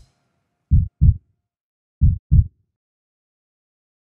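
Deep, heartbeat-like double thumps in an outro sound effect: two pairs of quick low beats about 1.3 seconds apart.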